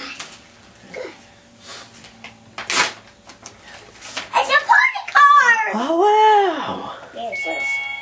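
Excited high voice exclaiming, with a long drawn-out rising-and-falling 'wow' about halfway through, after a brief rustle of paper as a birthday card is opened. A steady high tone starts near the end.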